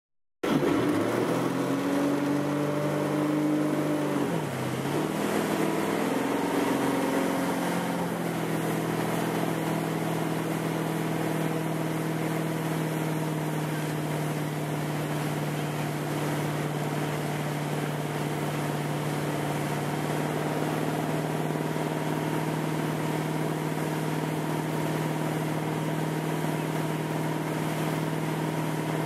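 Motorboat engine accelerating under load as it pulls riders up out of the water. Its pitch rises over the first few seconds, dips briefly, climbs again, then holds steady at towing speed from about eight seconds in. Water rushes and wind noise runs throughout.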